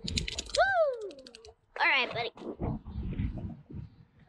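A child's wordless vocal exclamations: a drawn-out sound gliding down in pitch in the first second and a short upward-sweeping 'woo'-like cry about two seconds in, with a quick rattle of clicks at the very start and low rustling handling noise between them.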